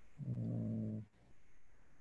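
A person's short, low closed-mouth hum, a steady "mm" held on one pitch for just under a second.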